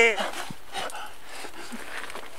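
The end of a drawn-out shouted call of "aiuti!" ("help!") right at the start, then a lull of faint open-air background with a small knock and rustles.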